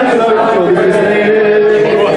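Male voices singing and chanting together into a microphone, one voice holding a long steady note through most of it.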